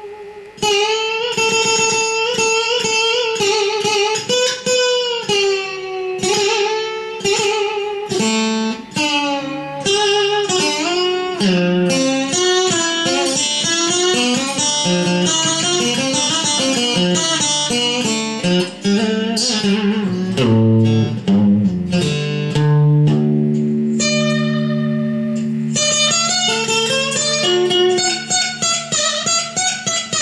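Solo black acoustic-electric guitar played fingerstyle: a single-note melody of a traditional southern Vietnamese folk tune, with many notes bent and wavered in pitch, and lower sustained notes in the second half.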